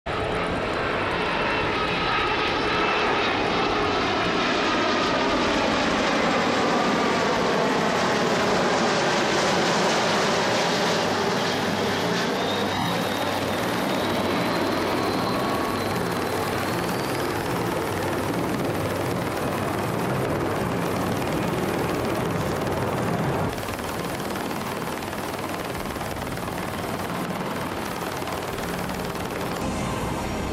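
Airbus BelugaXL's twin Rolls-Royce Trent 700 turbofan engines running at high power, a loud dense jet noise with engine tones sliding down in pitch over the first twelve seconds. A thin rising whine comes in near the middle, and the sound drops in level a little after twenty seconds.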